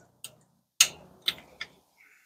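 A metal tool clicking and knocking against a Lexus LX470 rear brake caliper as it is levered in the caliper to push the piston back: four short clicks, the second the loudest.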